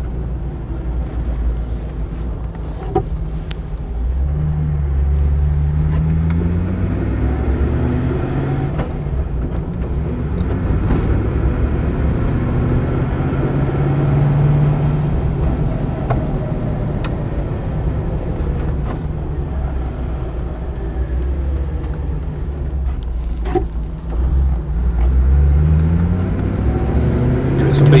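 Land Rover 90's 3.5-litre Rover V8 engine heard from inside the cab while driving. Its note climbs as it accelerates a few seconds in, holds fairly steady, then climbs again near the end.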